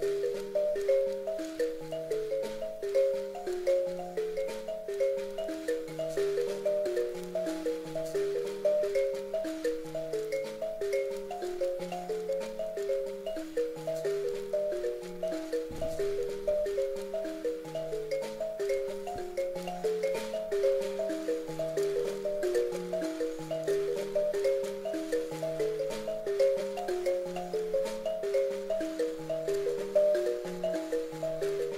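Two Shona mbira, thumb pianos with steel tines, play interlocking repeating patterns of plucked notes. Bottle caps fixed to the instruments add a buzz that resembles wire brushes on a snare drum.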